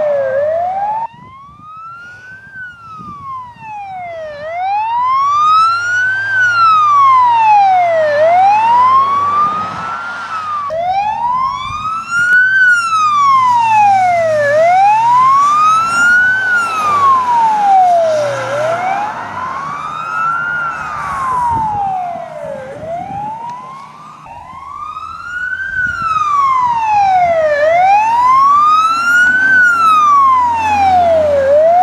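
Wailing siren of a Škoda Octavia RS rally safety car, sweeping slowly up and down in pitch, each full rise and fall taking about four seconds. It is loud throughout and breaks off abruptly in a few places.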